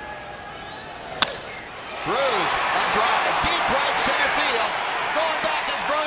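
Sharp crack of a wooden bat squarely striking a baseball about a second in, on a home-run swing. A moment later the crowd noise swells loudly and stays up as the ball carries to the outfield wall.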